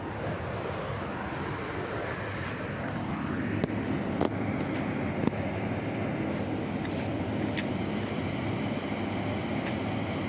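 Steady low rumble of outdoor urban background noise, with a few faint sharp clicks scattered through it.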